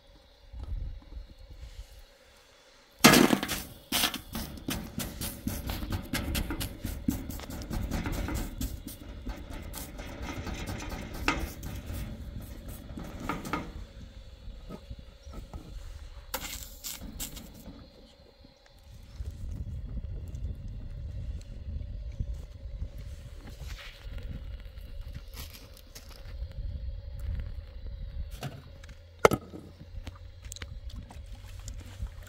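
Knocks and taps of metal cookware as flat rounds of dough are handled and laid on a large aluminium tray: one sharp knock about three seconds in, a run of quick taps after it, and another sharp knock near the end. A low rumble of wind on the microphone runs underneath.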